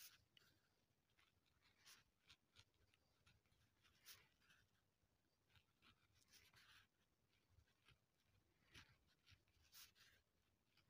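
Faint scratching of a pen writing on lined notebook paper, in short irregular strokes, a few of them sharper than the rest.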